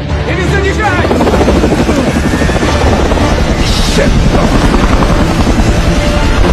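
Large transport helicopter's main rotor chopping rapidly and loudly as it hovers. The chop fills in and grows louder about a second in.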